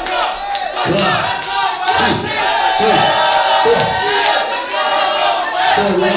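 A crowd shouting and cheering, many voices yelling over one another without let-up.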